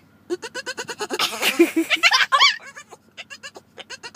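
Boston Terrier making excited whining cries that sound like a goat or a dolphin: a rapid pulsing string of short yips, then a high, bending squeal about two seconds in, then a few short clicks near the end.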